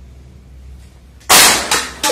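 A low hum, then about a second and a quarter in a sudden, very loud bang that dies away over about half a second.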